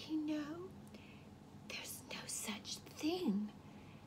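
A woman's voice speaking softly, mostly in a whisper, with a few short voiced, gliding sounds.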